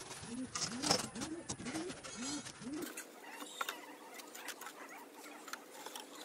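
A bird calling in a run of about six short rising-and-falling notes over the first three seconds. After that come a few faint light clicks.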